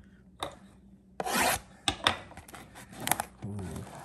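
Plastic shrink wrap on a trading-card box being slit and torn open: a rasping stroke a little over a second in, then several short, sharp scratches of the film.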